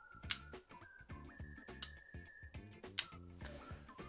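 Arno Bernard iMamba folding knife on caged bearings flipped through its updated detent: two sharp clicks about two and a half seconds apart as the blade snaps over. Quiet background music runs underneath.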